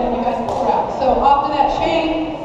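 Several people talking at once, indistinct chatter, with a short sharp tap about half a second in.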